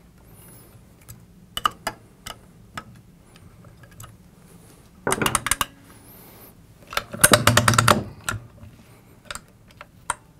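Small metallic clicks and clatter of an Allen wrench snugging up screws on a Blitzfire monitor's retainer plate, with scattered single clicks at first and two denser bursts of rattling about five and seven seconds in.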